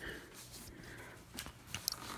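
Faint handling of a hard drive's voice-coil actuator magnet and its metal bracket in the fingers, with a few small metallic clicks about a second and a half in.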